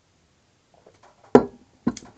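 Drinking glass set down on a hard surface: two sharp knocks about half a second apart, the first with a brief ring.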